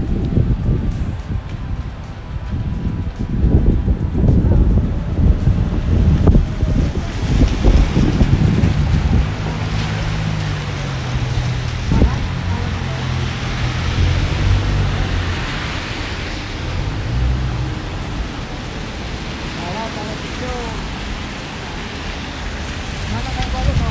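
Wind buffeting the microphone with a gusty low rumble for the first several seconds, then background music with a low bass line under a steady hiss.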